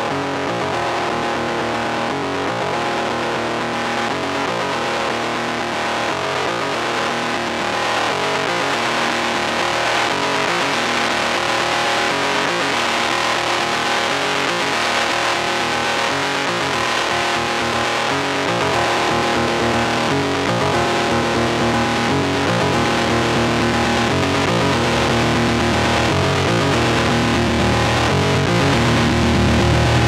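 Synthesizer notes played through a Gamechanger Audio Plasma Pedal's high-voltage distortion, heavily distorted, while its tone knobs are turned. Over the last third the low end swells and the sound gets louder.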